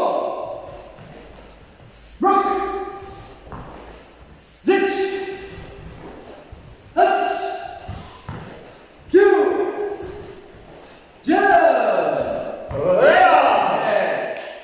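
A man shouting a count in Japanese to pace repeated karate techniques, one sharp call about every two seconds, each ringing on in a large echoing hall; near the end the calls come closer together.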